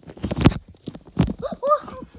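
Two heavy thumps with rustling, from the phone being swung about and bumped into the bedding, then a short high rising-and-falling vocal squeal near the end.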